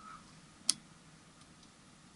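A single short, sharp click about two-thirds of a second in, against a quiet room background.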